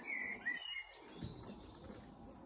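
Songbirds singing: a few short, high whistled phrases.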